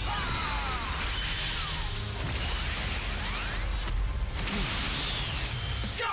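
Animated fight sound effects: a clash of fists followed by a loud, sustained energy rumble with sweeping whooshes, over a dramatic music score.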